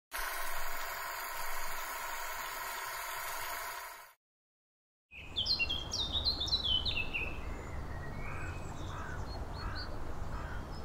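Songbirds singing: a quick run of chirps falling in pitch, then lower calls repeating about every half second, over a steady low rumble. Before them, for about four seconds, a steady sound of many held tones cuts off into a second of silence.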